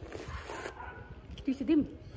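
A dog barking, a short two-part bark about one and a half seconds in, after a brief rustle at the start.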